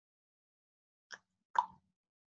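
Two short clicks about half a second apart, the second louder, against otherwise dead silence.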